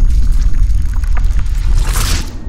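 Sound effects for a logo animation: a loud, deep rumble with splashing water, swelling into a whoosh near the end.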